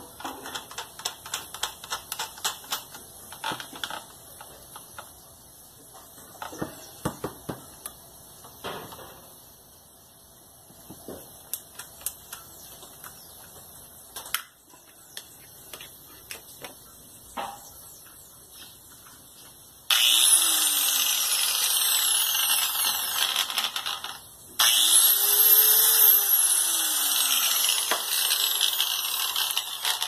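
Electric angle grinder, just repaired, switched on and run twice for about four to five seconds each with a brief stop between, a loud high whine, showing it now works. Before that, clicks and knocks of parts being fitted onto the grinder.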